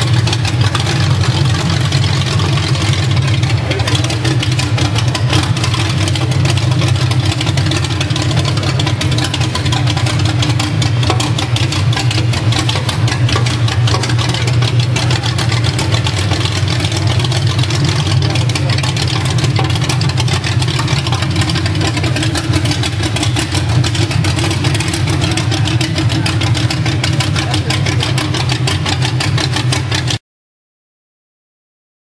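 Austin gasser hot rod's engine idling loudly and steadily, an even, rapid exhaust beat with no revving, as the car creeps forward at walking pace.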